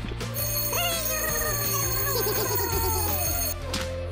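Eilik desktop robots' electronic voice chirps, warbling and gliding down in pitch, over a bright bell-like ringing chime that stops shortly before the end, with steady background music underneath.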